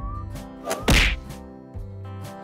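A sharp cartoon whack sound effect about a second in, marking the animated egg splitting open, over light background music with steady notes.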